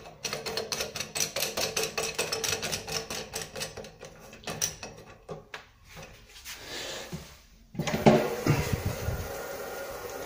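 Rapid clicking as a chrome flush button is screwed back onto a Geberit toilet cistern lid. About eight seconds in, a steady rush of water sets in suddenly as the toilet is flushed.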